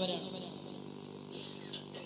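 A pause in a sermon over a public-address system. The echo of the preacher's last words fades into a faint, steady hum from the sound system.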